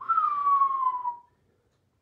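A man whistling one falling note, about a second long.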